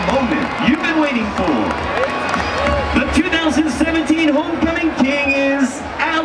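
A stadium announcer speaking over the public-address system in long, drawn-out phrases, above a large crowd's cheering and applause.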